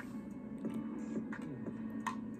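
A low steady hum with a few faint clicks.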